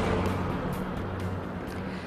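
TV news 'LIVE' graphic sting: a short burst of music that fades away over the two seconds.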